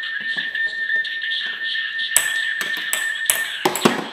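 Electronic jingle from the Deer Pong toy's small speaker, tinny and steady, cutting off shortly before the end as the timed round finishes. Over it, ping pong balls click repeatedly as they bounce on the countertop and into the antler cups.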